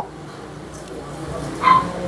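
A single short, high-pitched animal call about a second and a half in, over a quiet background.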